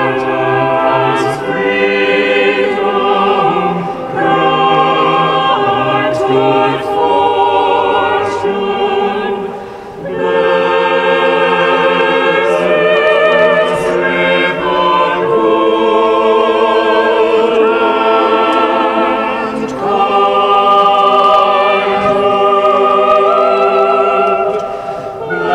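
Mixed church choir of men and women singing a hymn in long sustained phrases, with short breaths between phrases about four, ten and twenty seconds in.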